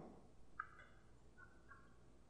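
Near silence: room tone, with two faint, short pitched tones, one just over half a second in and a second, lower one about a second and a half in.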